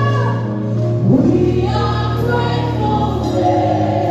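Live gospel music: a woman's lead vocal with backing singers over a band with bass guitar and drums. About a second in, a voice glides up in pitch into a held note.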